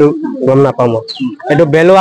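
A man speaking into the microphones, with a bird calling briefly, a short high chirp about a second in.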